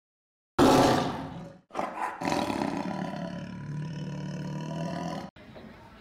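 A big-cat roar sound effect, a tiger roar. It starts suddenly and loud and fades within a second, then after a brief break comes a second, longer roar of about three and a half seconds that cuts off abruptly near the end.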